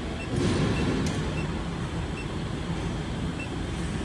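Steady low rumbling background noise of an industrial room, with a few faint, short, high beeps from the scale terminal's keypad as its arrow key is pressed.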